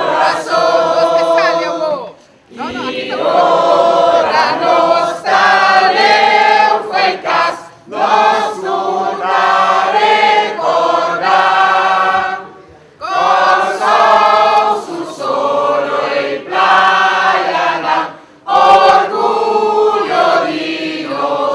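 A large crowd singing together in unison, in long sustained phrases broken by brief pauses about every five seconds.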